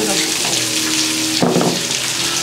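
Hot oil sizzling on chopped chillies, ginger and garlic poured over a bracken-fern salad, a steady hiss, with some steady low tones underneath.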